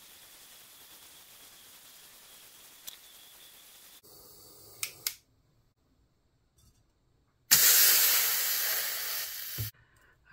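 A butane micro torch hisses faintly and steadily while heating a brass wire coil, followed by a couple of sharp clicks. After a pause, the red-hot annealed brass coil is quenched in water and sizzles loudly, fading away over about two seconds, ending with a light knock.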